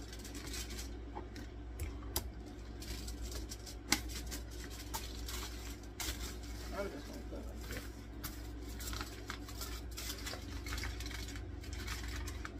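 Aluminum foil crinkling as hands fold and press it flat, in irregular crackles, over a steady low hum.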